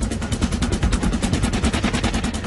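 A fast, even clatter of sharp ticks, about fourteen a second.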